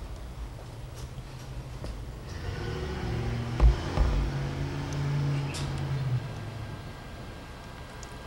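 A low steady hum, with the faint whine of a small camcorder zoom motor running for about four seconds in the middle. Two dull knocks come about three and a half and four seconds in.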